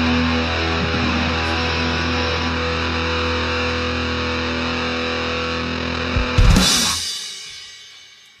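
A live rock band holds a final distorted electric-guitar chord, the closing sustain of the song. About six seconds in it ends with a loud closing hit, which rings out and fades away.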